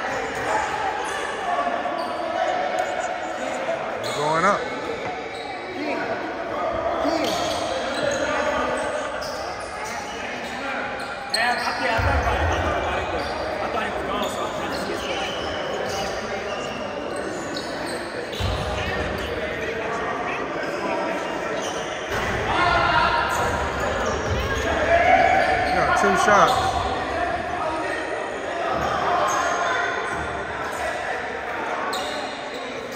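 Players' and onlookers' voices echoing in a gymnasium, with a basketball bouncing on the hardwood floor.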